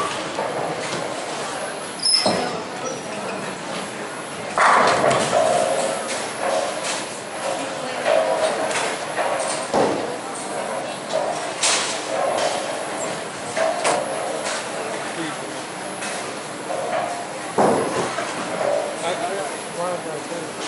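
Bowling alley hall sound: indistinct voices talking, broken about five times by sharp crashes of bowling balls striking pins on the lanes.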